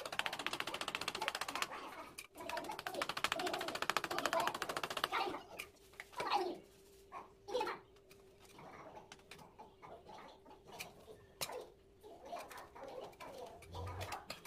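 A hand tool scraping rapidly at the bottom edge of ceramic wall tiles, a fast rasping run for about five seconds, then scattered scrapes, clicks and taps.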